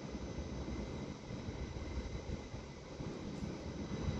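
NS ICMm (Koploper) electric multiple unit rolling slowly into the station platform, a steady low rumble with faint steady electrical tones above it.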